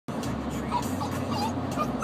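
A 4-month-old puppy whimpering in a few short, faint high whines over a steady background hum, the distress of a young dog separated from its owner.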